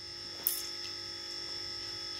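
Steady electrical hum with a high-pitched whine, and a short hiss about half a second in.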